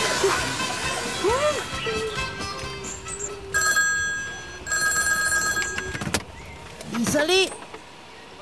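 A telephone ringing electronically in two bursts of about a second each, a few seconds in, with a sharp click just after. Before the ring, and again near the end, a man gives wavering "ooh" cries.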